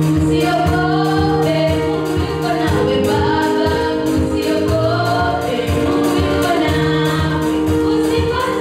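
A small girls' vocal group singing a gospel song into microphones, backed by a live band with electric bass guitar and drums. The voices carry a moving melody over held low chords and a steady beat.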